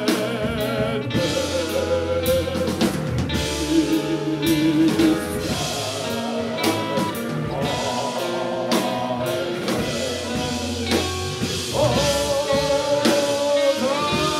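Live band playing with electric guitar, bass and drums, and a voice singing long held notes with vibrato over it.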